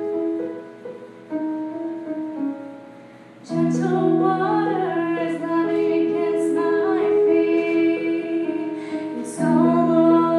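A woman singing to her own electronic keyboard played with a piano sound: a few seconds of soft keyboard chords, then her voice comes in about three and a half seconds in and carries on over the keyboard.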